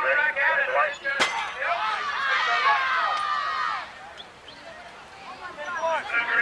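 Spectators shouting and cheering, many voices overlapping, loudest from about one and a half to four seconds in, then falling away to a quieter murmur. A single sharp click comes about a second in.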